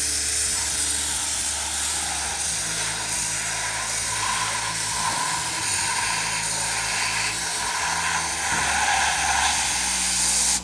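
Air-fed spray wand hissing steadily as it sprays a decarbonising cleaning foam, with a low steady hum underneath.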